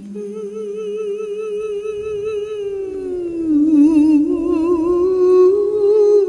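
Wordless vocal music: a single voice humming long held notes with vibrato. The line slides down a few steps about three seconds in, then rises slowly again.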